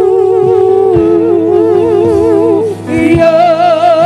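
Gospel choir singing long held chords with vibrato, with a lead singer on a microphone. The chord changes about three seconds in.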